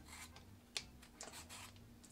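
Faint, short scraping strokes of a vintage Victorinox vegetable peeler taking the skin off a russet potato, with one sharper click a little under a second in.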